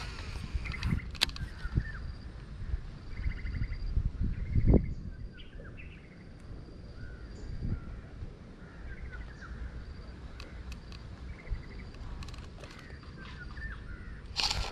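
Several birds calling around the water with short chirps and calls scattered throughout, over the low rumble of wind on the microphone. There are a few sharp clicks, and a louder low thump about five seconds in.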